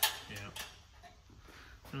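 A single sharp knock at the very start, the loudest sound here, then quiet shop room tone with a steady low hum.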